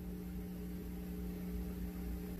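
Faint steady hum with a light hiss from an idle BT-298A Bluetooth mini amplifier heard through a JVC bookshelf speaker: the white noise the amp gives off when its bass and treble are turned up high.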